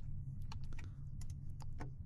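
Typing on a computer keyboard: a quick, uneven run of keystrokes as a line of code is entered, over a steady low hum.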